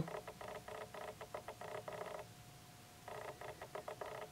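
Faint rapid clicking, a dense run of small ticks that pauses for about a second just past the middle and then resumes.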